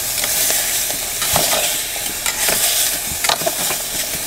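Venison sausage and onions sizzling in an aluminium pot, with metal tongs stirring and clicking against the pot's side several times.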